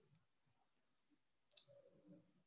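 Near silence: room tone, with one faint sharp click about one and a half seconds in.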